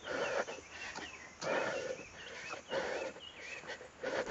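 Heavy breathing of a person walking in the heat, a loud breath about every second and a half. Faint bird calls whistle between the breaths.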